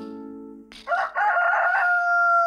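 A rooster crowing cock-a-doodle-doo as a morning wake-up call, starting nearly a second in and ending on one long held note.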